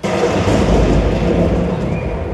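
A loud boom with a long rumble played as a show sound effect, cutting in suddenly and slowly dying away.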